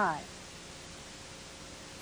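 Steady background hiss of an old VHS tape transfer, following the tail end of a woman's spoken word at the very start.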